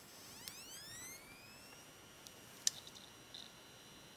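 An 80 GB Samsung IDE hard disk drive spinning up on power-on: a faint whine rises in pitch for about a second and a half, then holds steady as the platters reach speed. A click comes near the start and a sharper one about halfway through.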